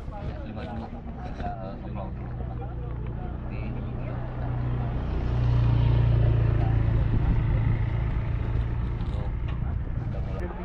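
A motor vehicle's engine running nearby with a steady low hum that grows louder about five seconds in and eases off toward the end, with voices murmuring in the background.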